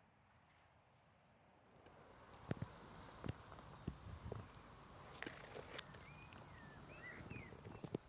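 Faint outdoor ambience: a low wind rumble that builds from about two seconds in, with a handful of irregular soft knocks and a bird chirping a few times near the end.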